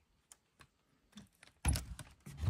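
A wooden cabin door being pushed open: a few faint clicks and rattles, then a loud knock with a deep thud near the end.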